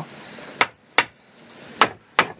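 Hammer striking a thin wooden rail down into a half-lap notch in a timber frame: three sharp knocks, the last near the end, seating the rail flush at the same height as the piece beside it.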